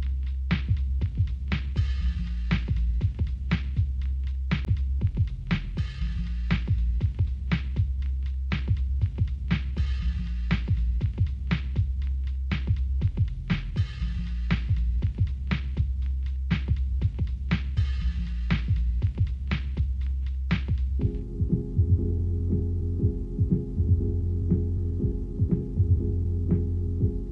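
Instrumental pop music with no singing: a steady drum beat over a deep bass line. Near the end the deep bass gives way to held synth chords, with a lighter beat continuing.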